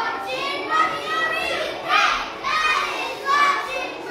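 A group of children singing and calling out together, loudly, in short phrases.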